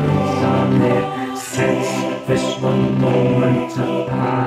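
Folk song with choir-like voices holding long notes in harmony over the accompaniment.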